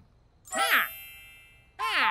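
Cartoon sound effect: a bright bell-like chime rings out about half a second in and fades away over about a second, with a brief voiced vocalisation from a cartoon character at its start. Just before the end, a new sound with several held tones and voices begins.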